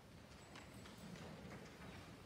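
Near-quiet church with faint, irregular clicks and knocks, a few each second, over low room hum.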